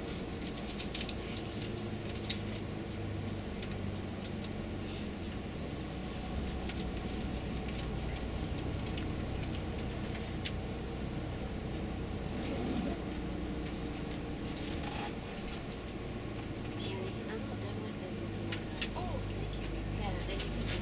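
Steady engine and road noise of a tour coach driving at highway speed, heard from inside the cabin, with a couple of brief sharp clicks.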